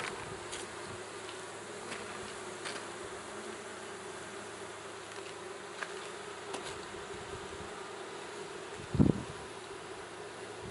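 Honey bees buzzing in flight around small hives, a steady hum. A single short thump about nine seconds in.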